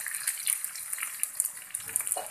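Quartered onions frying in oil in a pan that has just been covered, sizzling with a steady crackling hiss and scattered small pops.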